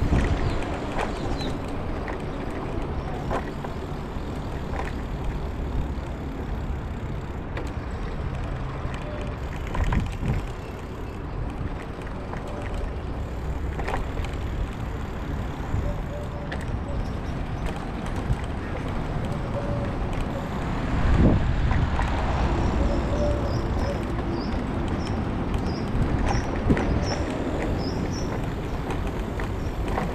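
Bicycle riding over paving stones: a steady rushing of air and tyre noise, with a few sharp knocks and rattles from the bike about a third of the way in and again later.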